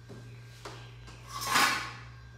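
A brief rush of noise that swells and fades over about half a second near the end, as a mountain-bike wheel with a knobby tyre is swung around close by; a low steady hum runs underneath.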